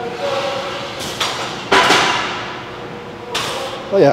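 Weighted dips with a chained plate: strained breaths and a low grunt from the lifter, with a short knock and then a loud sharp clank a little under two seconds in.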